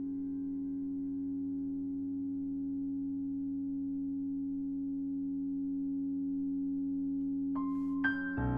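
Grand piano strings held sounding by EBows: a steady drone of several sustained pitches, one low tone strongest, slowly swelling. Just before the end a struck piano note cuts in.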